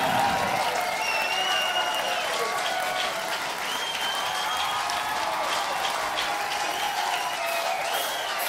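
Concert crowd applauding and cheering at the end of a song, with scattered whistles and shouts over the steady clapping.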